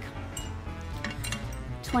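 A small flamingo wind chime being handled, its hanging pieces knocking together in a light tinkle, over quiet background music.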